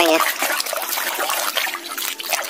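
Muddy water splashing and sloshing in a plastic tub as a hand scrubs a plastic toy mask under it, with irregular splashes throughout.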